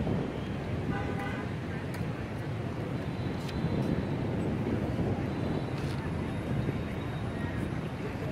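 Steady open-air city noise, the low rumble of distant traffic, with a few sharp clicks and a short pitched call or toot about a second in.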